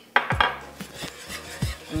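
Wire whisk clicking and scraping against a nonstick frying pan as cream is whisked into a caramel sauce, with a sharp knock a fraction of a second in.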